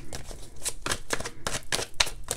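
A deck of cards being shuffled and handled in the hands: a quick, irregular run of short card flicks and slaps.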